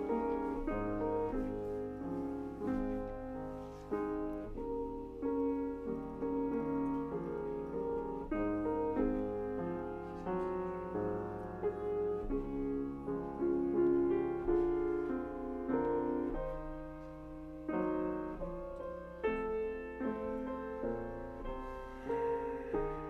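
Solo grand piano playing, a continuous run of melody notes and chords changing every second or so.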